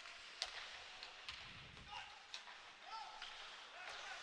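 Faint ice-rink sound during hockey play: a few sharp, scattered clacks of sticks and puck, with faint distant shouts from players.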